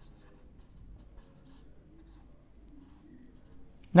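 Marker pen writing on a whiteboard: faint, short scratching strokes.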